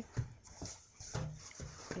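Handling noise from placemats being moved and set down: about four short knocks and rustles, roughly half a second apart, the first the loudest.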